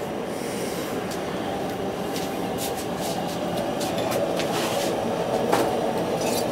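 Propane burners of a gas-fired salt kiln burning with a steady rushing noise that grows a little louder toward the end, with a few light clicks and knocks over it.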